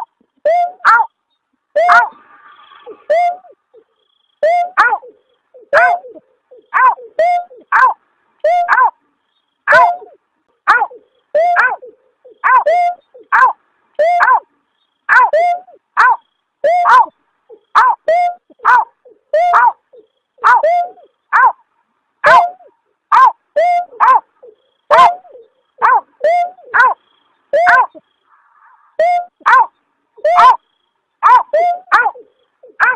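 Looped lure recording of the call of the snipe known in Indonesia as berkik or beker: short, yelping "aw" notes that slide down in pitch, repeated about once or twice a second, some in quick pairs.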